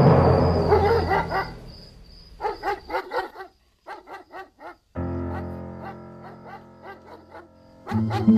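Background drama score: a held chord fades out, then short pitched notes come in quick groups, and a soft new passage with repeated plucked notes begins about five seconds in.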